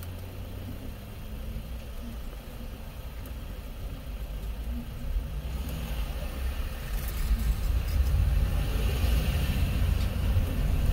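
Car engine idling, heard from inside the cabin while stopped in traffic, then the car pulls away and engine and road noise grow steadily louder over the second half.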